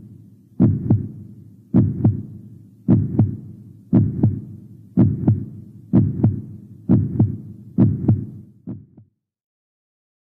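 A heartbeat sound effect: low double thumps (lub-dub) about once a second, gradually quickening a little. The last beat is weaker, and the sound stops about nine seconds in.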